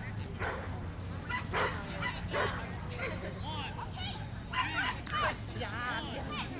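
A dog barking several times in short, sharp barks, mostly in the first half, over the talk of people nearby.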